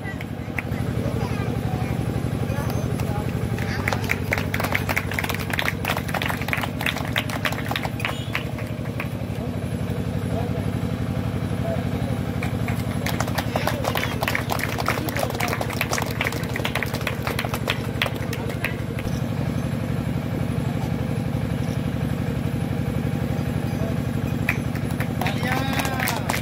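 Indistinct voices in the background over a steady low hum that sounds like an engine running.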